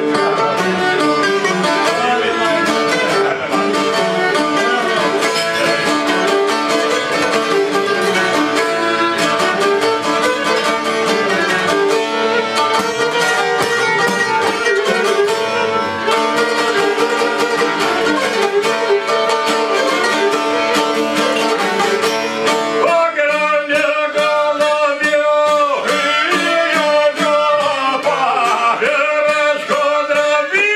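Albanian folk ensemble playing an instrumental passage: a bowed violin over the plucked strings of a çifteli and a long-necked lute. Near the end the lower strings thin out and a wavering, bending melody line comes to the front.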